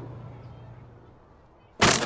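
A faint outdoor background with a low hum fades away. Near the end a sudden loud bang sets off a rapid run of clattering knocks and rattles at a door and its lock.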